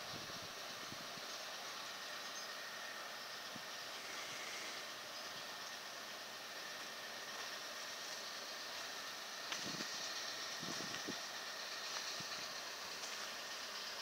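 Faint, steady background hiss of a quiet outdoor scene, with a few soft low bumps about ten and eleven seconds in.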